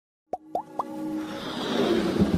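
Animated intro sound effects: three quick pops, each rising in pitch, about a quarter second apart, then a whoosh that swells steadily, leading into electronic intro music.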